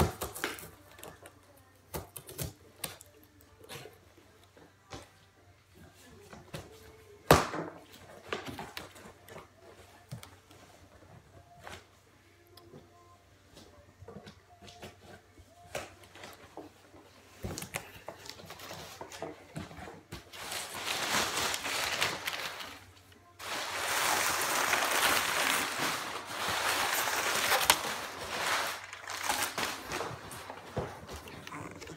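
Scissors snipping and slicing through packing tape on a cardboard shipping box, with scattered clicks and one sharp knock about seven seconds in. From about twenty seconds in, loud crinkling and rustling of brown kraft packing paper being pulled out of the box.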